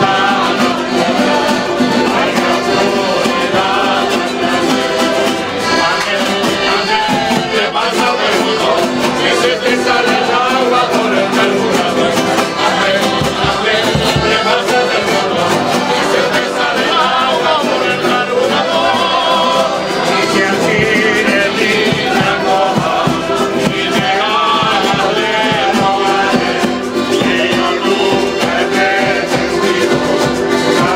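A Canarian folk group plays, strumming timples and guitars with an accordion, while men sing together in full voice.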